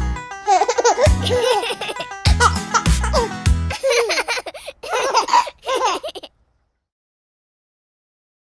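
Upbeat children's song with a thumping bass beat that ends about four seconds in, followed by about two seconds of cartoon children giggling and laughing, then silence.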